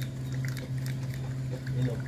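A wooden stick stirring liquid fertilizer mixed with water in a small plastic cup, giving small scattered taps and scrapes against the cup, over a steady low hum.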